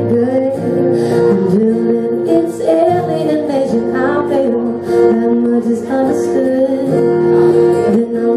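A woman singing solo with her own strummed acoustic guitar.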